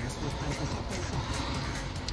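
Car radio playing FM static through the car's speakers, a steady hiss: the set has just come back on after unlocking and is sitting on 87.5 with no station tuned in.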